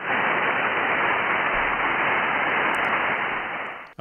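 Icom IC-7300 receiver hiss on 20-metre upper sideband with no station transmitting: steady band noise through the narrow SSB filter, cutting off just before the end as the radio switches over to transmit.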